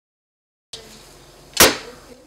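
Silence, then faint room noise begins, and a single sharp knock a little past halfway, the loudest sound, dying away quickly.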